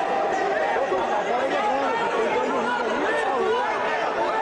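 A crowd of many voices talking and calling out over one another, with no single voice standing out.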